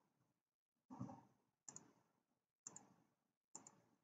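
Near silence broken by a few faint computer mouse clicks, roughly a second apart in the second half, after a brief soft sound about a second in.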